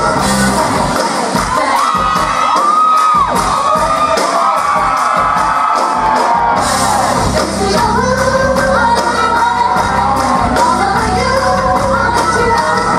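Live pop-rock band with drums and electric guitar playing while several women sing lead into microphones, heard from the crowd with audience shouts and whoops mixed in.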